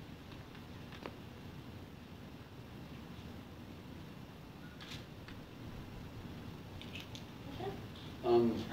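Quiet room tone: a steady low rumble and hiss, with a few faint clicks or taps scattered through it.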